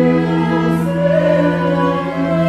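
Classical performance for cello and soprano voice: the cello is bowed in sustained notes while a soprano sings a slow melody above, over a steady low held note from the strings.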